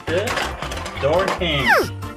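Background music with a pulsing low bass, under quick voice-like chirps that rise and fall, and a whistle-like glide falling in pitch near the end.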